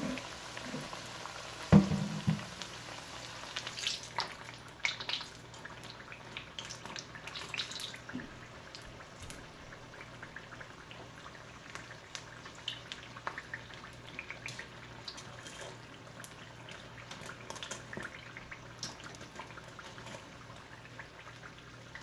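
Battered cabbage pastries deep-frying in oil in a wok: a low sizzle with short crackling pops, busiest in the first several seconds and thinning out later. A single sharp knock about two seconds in is the loudest sound.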